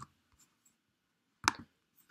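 A single sharp computer mouse click about one and a half seconds in, with a few faint ticks around it; otherwise near silence.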